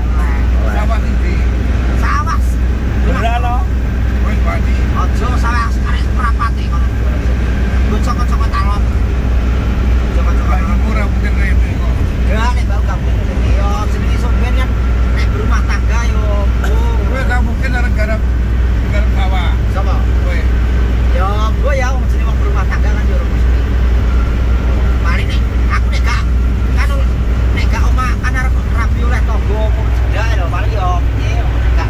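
Steady low road and engine rumble inside an Isuzu Panther's cabin as it drives at speed, with men talking over it.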